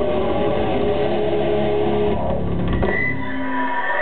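Live grindcore band's electric guitars and drums playing loudly, the music breaking up about two seconds in and stopping near the end as the song finishes, with a high steady tone left ringing.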